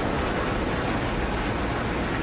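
Glacier calving: a huge mass of ice collapsing and churning into the water, heard as a loud, continuous rumbling noise.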